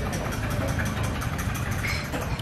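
An engine idling steadily with a low rumble, with faint light clicks over it.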